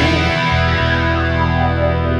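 Instrumental passage of a rock song: electric guitar through distortion and effects, holding sustained chords over steady low bass notes.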